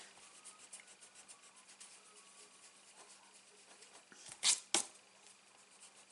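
Faint, scratchy rubbing of a sand eraser on a paper card, scrubbing off a stray mark, with two short louder noises about four and a half seconds in.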